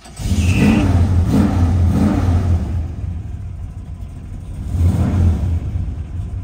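A 502 cubic-inch big-block V8 heard from inside the car's cabin. It starts up and is blipped three times in quick revs, settles toward idle, then is revved once more near the end, the tachometer needle following it.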